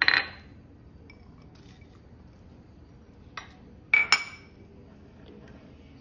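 Dishes and a saucepan clinking on a kitchen counter while citrus peels are put into the pot. There is a sharp clatter at the start, a light click about three and a half seconds in, and two ringing clinks just after four seconds.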